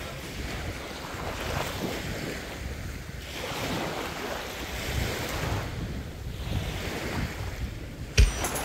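Sea water sloshing and rushing around a camera held at the surface while snorkelling, the wash swelling and fading every two seconds or so.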